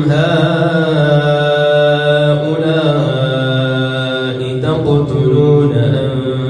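A man chanting Quranic recitation (tajweed) in long, held melodic notes that glide and step between pitches. There is a brief break for breath or a consonant about four and a half seconds in.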